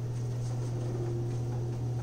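Steady low hum of room tone with no distinct event; a faint higher steady tone joins just before the middle.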